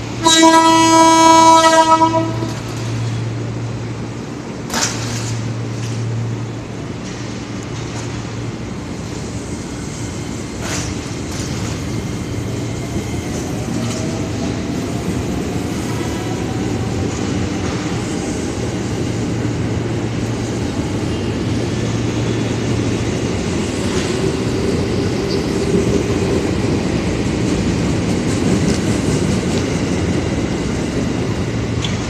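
A train horn sounds once, loudly, for about two seconds. Then comes a steady low hum and the slowly rising rumble of a train approaching along the rails: a coach consist being shunted into the platform track.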